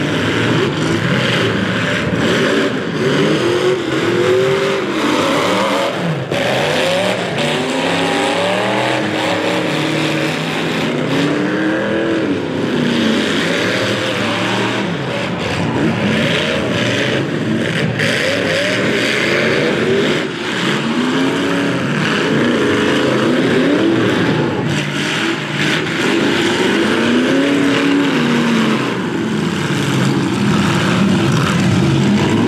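Several demolition-derby mini trucks and SUVs with their engines revving up and down over one another, with a few sharp metal crashes as the vehicles ram each other.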